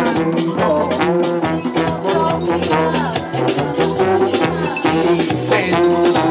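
Live cumbia band playing an instrumental passage: a steady beat with hand drums and bass under brass horns.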